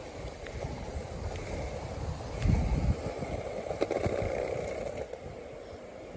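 Rolling ride noise and low wind rumble on the microphone while moving along a paved street, with a louder low bump about two and a half seconds in and a few small clicks.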